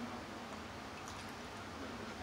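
Faint eating sounds over a steady low hiss: a few soft mouth clicks about a second in as a fried shrimp is eaten.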